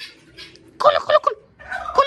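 Turkey gobbling: a loud, rapid warbling call about a second in, with a second one starting near the end.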